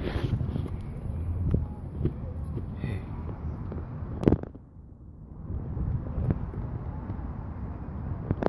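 Rumbling and bumping of a phone being handled close to its microphone, with light wind noise and scattered clicks. There is a sharp knock about four seconds in, and it is briefly quieter just after.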